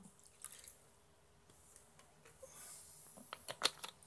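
Wood vinegar trickling from a bottle into a small plastic cup, faint and wet, followed in the last second by a quick cluster of light clicks and knocks as the bottle and cup are handled and set down.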